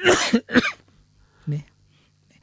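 A man coughing twice in quick succession, the first cough the longer, followed by a short throat clear about a second and a half in.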